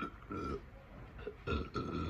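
A person burping twice: a short burp about a third of a second in and a longer one in the second half.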